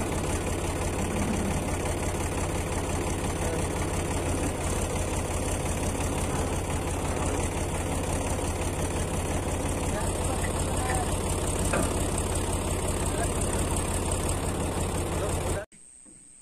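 Sonalika DI 42 RX tractor's diesel engine idling steadily with an even low rumble. It cuts off abruptly near the end.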